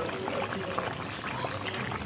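Pabda fish curry with pointed gourds bubbling at a rolling boil in a kadai: a steady, dense crackle of small pops and bursting bubbles.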